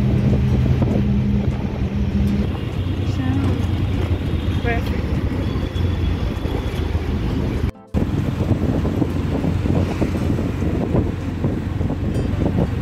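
Auto-rickshaw engine running with road and wind noise, heard from inside the moving rickshaw: a steady low hum over a rough rumble. The sound drops out briefly about eight seconds in.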